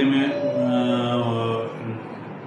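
A man's voice holding one long, level drawn-out syllable, a spoken word stretched into a hum-like hesitation between phrases.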